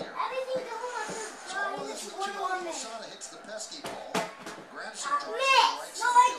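Children's voices talking and shouting as they play, with a sharp knock about four seconds in and a loud rising cry near the end.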